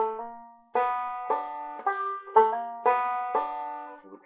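Banjo played slowly: a short phrase of about seven plucked notes, roughly two a second, each ringing out and fading.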